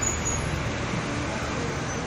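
Steady city street traffic noise: a continuous low rumble of road vehicles.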